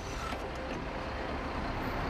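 City bus engine idling at a stop, with steady traffic noise around it.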